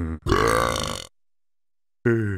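A cartoon monster character's burp, about a second long.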